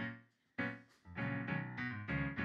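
Piano-style keyboard playing slow chords, each struck and left to fade before the next.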